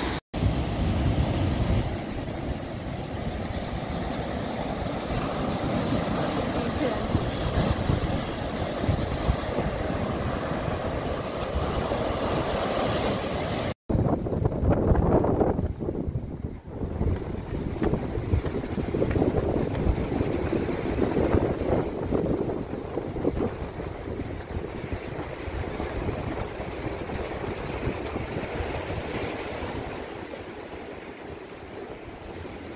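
Waves breaking and washing among shoreline rocks, with wind rumbling on the microphone. About 14 s in the sound cuts out for an instant, and the wind noise that follows is quieter.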